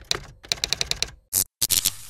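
Typewriter sound effect: a quick run of key clacks as text is typed out, with a short high ding a little past halfway.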